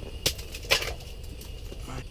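Two sharp knocks about half a second apart, the second slightly longer, over a steady faint hum.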